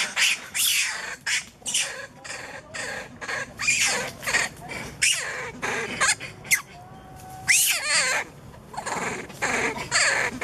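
Macaques calling in a rapid run of short, sharp squeals and screeches, with a few longer squeals that rise and fall in pitch about three-quarters of the way through.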